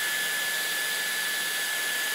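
Dyson Airstrait hair straightener running steadily: a rush of air with one steady, high-pitched motor whine.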